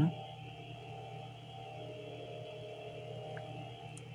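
A quiet steady hum with a few constant tones layered in it, unchanging throughout.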